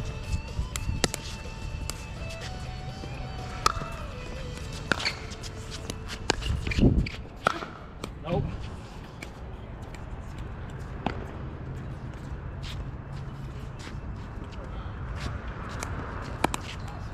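A pickleball rally: sharp pops of paddles striking a plastic ball at uneven intervals, mixed with shoe scuffs on the hard court. A louder low sound comes about seven seconds in.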